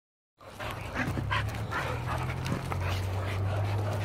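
A dog panting in short, quick breaths, about three a second, over a low steady hum.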